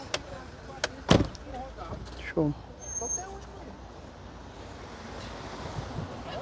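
Car door of a Fiat Siena shut about a second in: one loud thump, just after a couple of light clicks.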